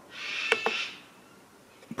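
A soft, breath-like hiss lasting under a second, with two small clicks about half a second in, as the buttons of a Taranis Q X7 radio transmitter are pressed to open a mixer line.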